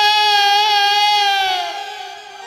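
A woman's voice singing one long, high held note of Bengali kirtan, slightly wavering, that bends down and fades away near the end.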